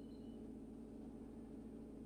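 Faint, steady low hum of background room tone, with no distinct sound events.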